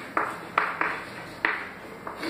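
Chalk tapping and scratching on a blackboard as a word is written, making a few sharp, separate taps.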